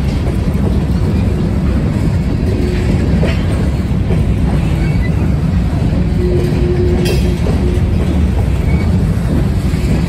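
Loaded freight train of covered hopper cars rolling past close by: a steady loud rumble of steel wheels on rail with clickety-clack from the rail joints, and a sharp click about seven seconds in.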